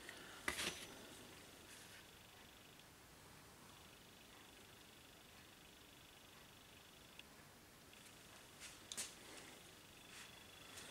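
Near-silent room tone with one sharp tap about half a second in and a few small clicks near the end, from a watercolour painter handling his brush and paper at the desk.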